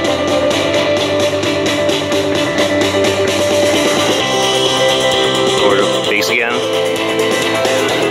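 Music playing through a GGMM M4 wireless speaker, streamed from a phone and picked up by the camera's microphone: a song with a singing voice over steady accompaniment.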